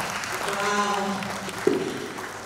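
A woman's voice over the hall's PA with light applause beneath it, and one sharp knock near the end.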